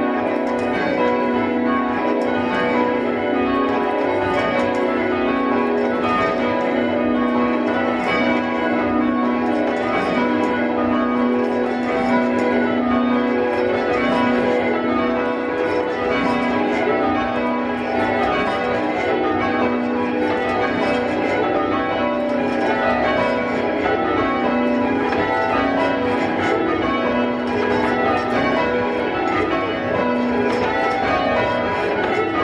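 A ring of six church bells, tenor about 6 cwt in B, rung full circle by ropes in the English change-ringing style: a continuous, evenly paced stream of bell strikes, each bell sounding once per round in turn.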